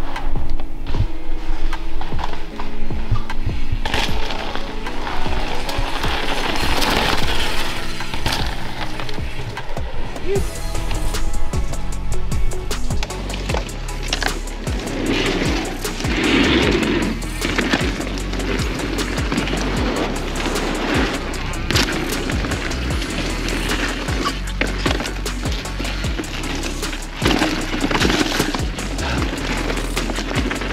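Background music with a steady beat, laid over a mountain bike riding a trail: tyres rolling over dirt and a wooden boardwalk, with scattered knocks and rattles from the bike landing jumps.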